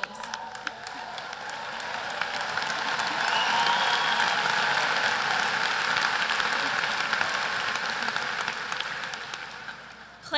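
Large crowd applauding and cheering, building over the first few seconds and fading away near the end.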